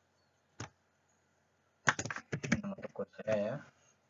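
Computer keyboard typing: a single keystroke about half a second in, then a quick run of keystrokes about two seconds in, followed by a short murmur of voice.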